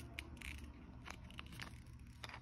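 Faint, scattered light clicks and rustles of a small plastic fidget toy being handled and turned in the hand, over a low steady hum.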